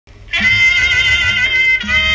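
Instrumental opening of an old Thai song played from a 78 rpm shellac record: the band starts about a third of a second in, with a held, wavering high melody over a steady bass line.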